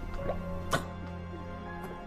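Film score music: a low sustained drone, with one sharp click about three quarters of a second in.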